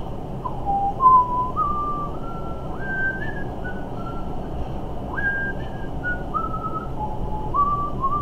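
A man whistling a slow tune, one clear note at a time, each held briefly before stepping up or down; the melody climbs to its highest notes about three seconds in and again about five seconds in, then drops lower near the end.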